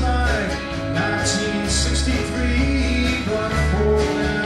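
Live country-rock band playing an instrumental stretch between sung lines: strummed acoustic guitars, electric guitar, bass and drums with recurring cymbal hits.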